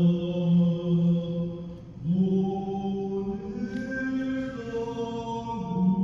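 A voice chanting long, held notes, each sustained for a couple of seconds. The pitch steps up twice, then drops back near the end.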